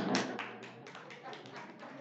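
A small group of people clapping: a quick, uneven patter of claps, several a second.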